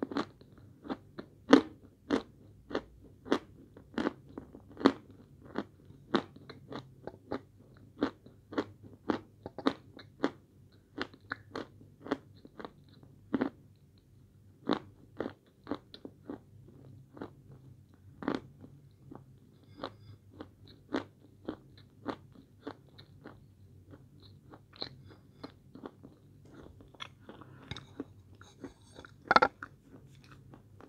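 Close-up crunching and chewing of hard chunks of edible chalk: a steady run of sharp, crisp crunches, about one or two a second.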